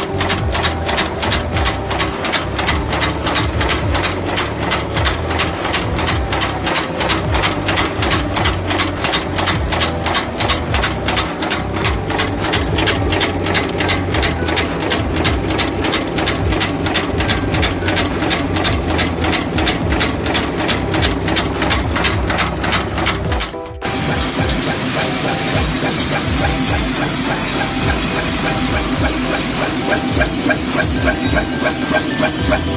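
Cold heading machine running, a rapid, even clatter of strokes as it forms the heads on drywall-screw blanks. About 24 seconds in the sound breaks off and gives way to a denser, less rhythmic noise.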